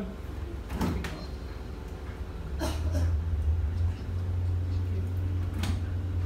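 Water taxi's engine running with a low rumble that swells and steadies about two and a half seconds in as power is applied, with a few short knocks.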